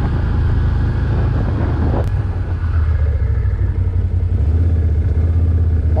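Can-Am Outlander 1000 ATV's V-twin engine running under way, a steady low drone. There is a single sharp knock about two seconds in, and the engine note shifts a little about four and a half seconds in.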